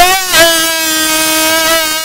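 A male bhajan singer holding one long high note through a microphone and loudspeakers. The note wavers slightly at first, then holds steady and fades near the end.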